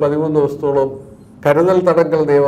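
A man speaking, with a short pause a little past a second in.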